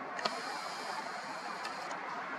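Camera's zoom lens motor whining faintly and steadily as the lens zooms out, starting with a sharp click and ending with a couple of small clicks near the end, over a steady hiss of background noise.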